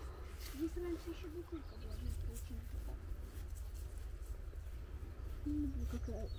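Faint, low voices, with steady wind rumble on the microphone throughout.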